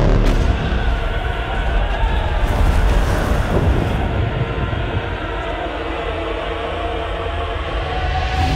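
Trailer sound design: a heavy, steady low rumble under sustained, ominous music tones.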